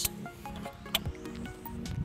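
Background music, with one sharp plastic click about a second in as the trailer-wiring T-connector snaps into the car's tail light harness plug.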